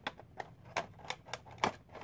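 Light handling of a Funko Pop vinyl figure and its box packaging: a quick, irregular series of about eight sharp clicks and taps.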